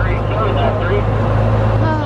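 Vintage Amphicar's engine running steadily as a low hum while the amphibious car cruises on the water, heard from inside the open cabin, with voices over it.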